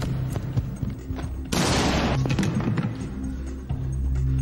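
Film soundtrack: the dramatic score holds low sustained notes, broken by a few sharp knocks and, about a second and a half in, a sudden loud burst of noise lasting under a second.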